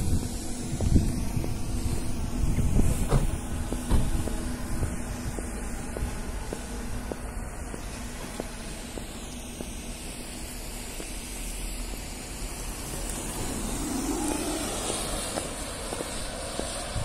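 Electric car on the move: a steady low rumble of road and tyre noise with no engine note, with a few sharp knocks in the first four seconds.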